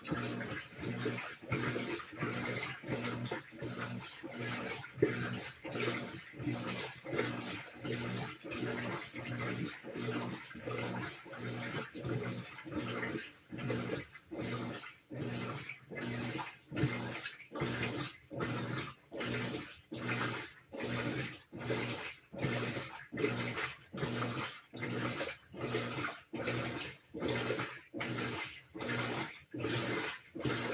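Whirlpool WTW4816 top-loading washer in the wash stage of a Normal cycle, agitating the load in water: a steady rhythm of swishing strokes, about one and a half a second, over a low motor hum.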